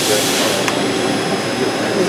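Steady machine-shop din: a loud, even rushing noise with faint steady high whines, and a single light click about a third of the way in.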